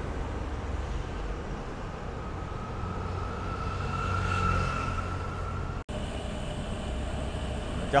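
Low rumble of road traffic on the street, with a faint whine that rises slowly and swells about four seconds in. About six seconds in it cuts off suddenly and gives way to a steadier hum.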